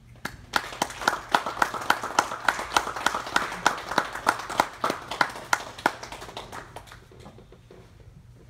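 Small audience applauding, with one loud, regular clapper close by; the clapping starts just after the start and dies away about seven seconds in.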